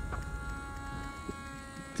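Steady, thin whine of a radio-controlled flying-wing airplane's electric motor and propeller in flight, with a low rumble of wind on the microphone.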